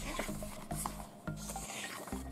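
Pages of a paper photobook being handled and turned, a soft rustling and rubbing with a few small clicks.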